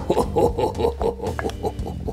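A man laughing in a quick run of ha-ha-ha sounds, with a few knocks of a muddler pressing ginger in a metal cocktail shaker tin, over background music.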